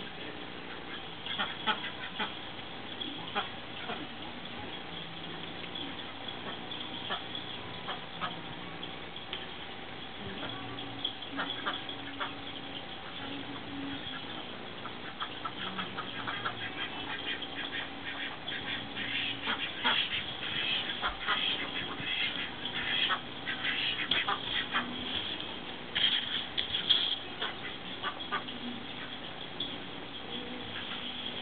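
Small flock of Indian Runner and Khaki Campbell ducks quacking: short calls, scattered at first, then more frequent and louder through the second half, loudest a few seconds before the end.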